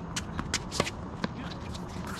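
Quick, sharp clicks and scuffs of tennis shoes on a hard court, mixed with the pop of a tennis ball during a doubles rally. The loudest pop comes just under a second in.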